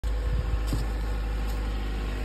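A 2005 Mazda 3's four-cylinder engine idling steadily.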